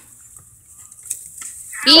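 Faint rustle and crinkle of a small paper slip being unfolded by hand over low background noise, then a child's loud, high-pitched "Ow" near the end.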